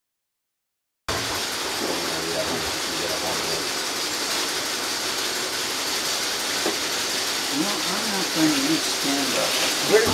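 A steady hiss that starts abruptly about a second in, with people's voices talking faintly under it, louder near the end.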